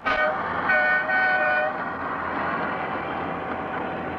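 The Transpraia beach train sounds its horn in short toots during the first two seconds, followed by its steady running noise as it travels along the line.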